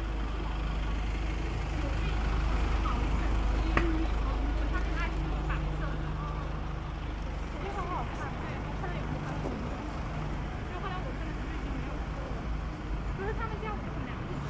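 City street ambience: a steady low rumble of road traffic with nearby passers-by talking, and one sharp click about four seconds in.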